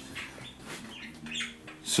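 Faint bird chirping.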